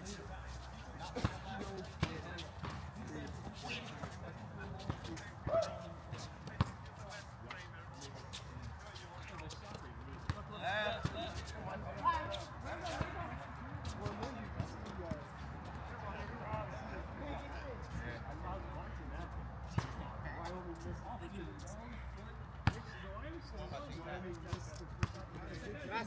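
A basketball bouncing on an outdoor hard court: scattered sharp knocks at irregular intervals. Players' voices are heard faintly in the distance.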